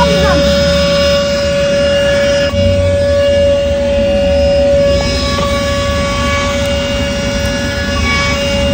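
Handheld vacuum cleaner running steadily with a high, even motor whine as its crevice nozzle is drawn over artificial turf.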